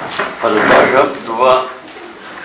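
A person's voice speaking briefly, about half a second to a second and a half in, with words that cannot be made out, over room noise.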